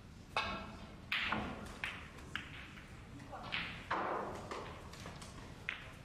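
Snooker break-off: the tip strikes the cue ball with a click, and a second later the cue ball hits the pack of reds with the loudest crack. Several more sharp ball clicks follow over the next few seconds as the balls strike each other and the cushions, the last one near the end.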